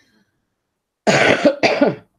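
A woman coughing twice in quick succession, starting about a second in.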